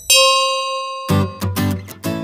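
Intro-animation sound effects: a bright bell-like ding that rings out and fades over about a second, followed by a quick run of four short pitched musical notes.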